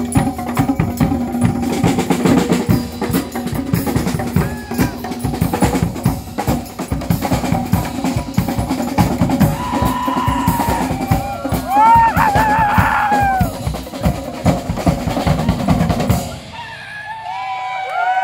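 Percussion ensemble of two drum kits and snare drums playing a fast, dense groove. It stops abruptly about sixteen seconds in, and whooping shouts follow.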